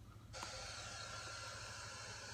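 A faint, steady hiss that switches on abruptly about a third of a second in, with a thin steady tone under it.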